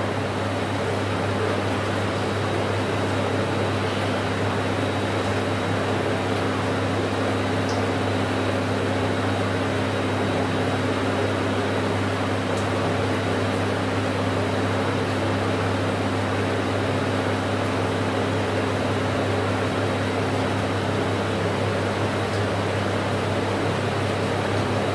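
A steady, unchanging mechanical hum with a low drone, a faint high whine and an even hiss, like a running electric fan or similar appliance.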